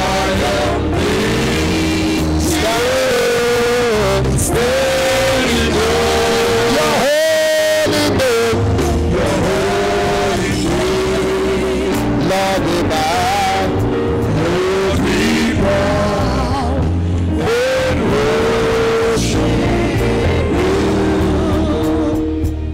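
Live church worship music: a band plays a steady bass and chords under a melody line that bends and glides.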